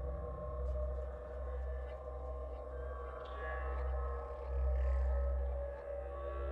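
Dark ambient background music: a low drone with steady held tones, swelling louder for a moment about five seconds in.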